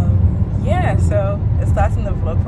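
Steady low rumble of road and engine noise inside a moving car's cabin, with a woman's voice briefly heard over it in the second half.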